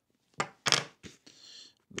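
Packing tape on a small cardboard box being slit with a small knife and peeled: two short crackles about half a second in, then a brief high rasp of tape pulling away.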